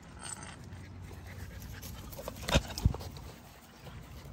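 XL bully puppy panting, with two sharp knocks about two and a half seconds in, a third of a second apart.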